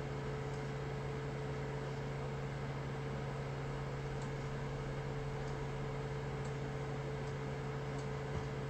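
A steady low hum over an even hiss, with a few faint, separate clicks, like a computer mouse being clicked.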